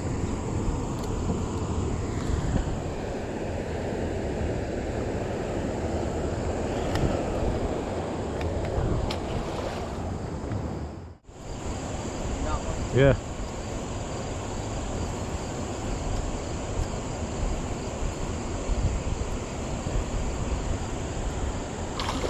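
Steady wind noise buffeting the microphone outdoors by a river, breaking off suddenly for a moment about halfway through.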